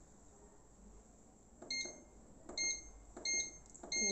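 Bread machine's control panel beeping four times in short, even tones, each beep a button press while its programme is being set.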